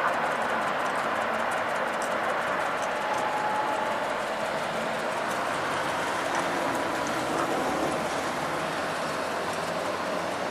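Tatra T3-type tram running along street track toward the listener: a steady running noise from wheels and gear, with a faint whine.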